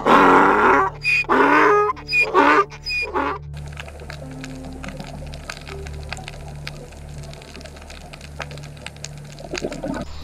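Asian wild ass braying: a run of loud, hoarse calls in several bursts over the first three and a half seconds. A steady ambient music drone runs underneath, and after the calls stop only the drone and faint scattered clicks remain.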